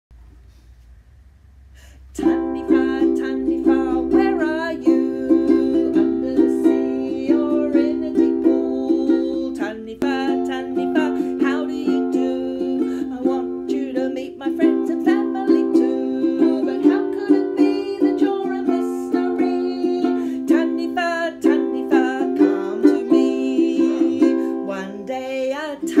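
Ukulele strummed in a steady rhythm, starting about two seconds in.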